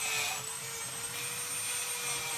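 Steady hum of a small motor, with a faint high whine above it.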